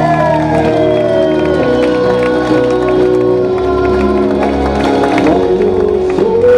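A live band plays an acoustic pop medley, with keyboard and guitar holding long chords, while an audience cheers over the music.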